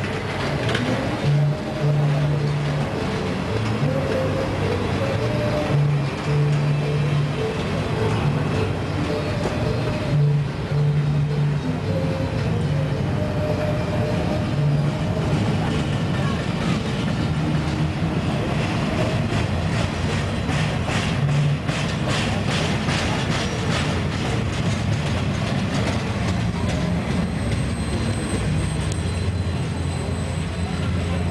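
A freight train's empty intermodal well cars rolling past on steel wheels: a steady rumble of wheels on rail with humming tones that come and go and a run of clicks over rail joints in the middle.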